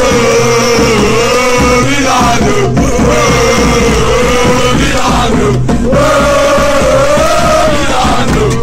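Music: a football supporters' chant sung by male voices in unison, one continuous melody line over steady low accompaniment.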